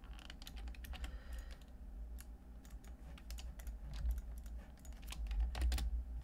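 Computer keyboard typing: irregular quick key clicks, some in short clusters, over a low steady hum.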